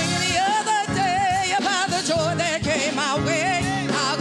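A woman singing the lead in a gospel song into a microphone, holding long notes with a wide vibrato.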